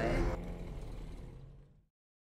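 A low, rumbling sound from the Soundbeam 6 music system that fades out, ending in silence just before the end. A brief bit of voice is heard at the very start.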